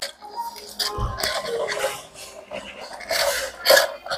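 Background music over table noises while eating, including a clink of cutlery on a plate. Near the end come two short noisy sips through a drinking straw.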